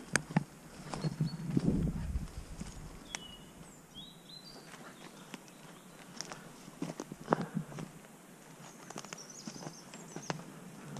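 Footsteps through long grass and undergrowth, uneven and irregular, with leaves and stems brushing; busiest in the first two seconds and again about seven seconds in. A few short high chirps from woodland birds come in the quieter middle stretch and near the end.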